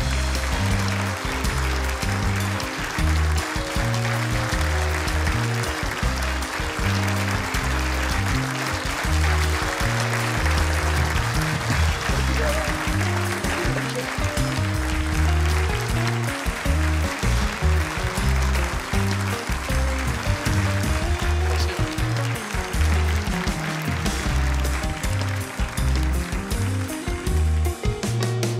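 A live band playing upbeat walk-on music with a heavy, moving bass line, over steady audience applause.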